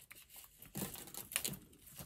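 Faint handling sounds of thin craft wire and glass beads on a wire whisk being wrapped, with a few soft clicks and rustles in the middle.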